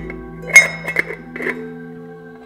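Sharp metal clinks from a round stainless-steel lid being set onto a small steel container and handled, the loudest about half a second in and lighter taps after it, over background music with guitar.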